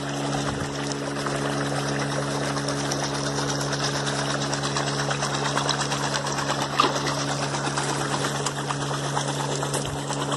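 A steady motor hum, like a pump running, over the even rush of water, with one brief higher sound about seven seconds in.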